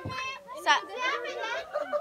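Several people talking at once, children's voices among them, with a brief low thump right at the start.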